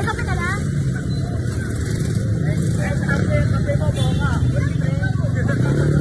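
Steady low rumble of street traffic, with several people talking in the background.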